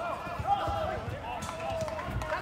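Faint shouting voices of players on a football pitch, with a few soft knocks.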